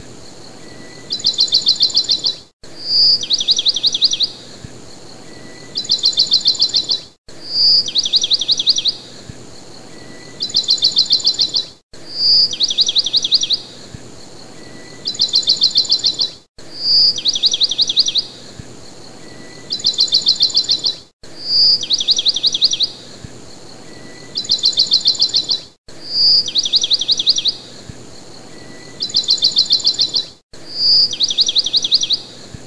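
A looped recording of bird song: a short clear whistle followed by a fast trill, then a second trill, with the same phrase repeating about every four and a half seconds and a brief cut between each repeat.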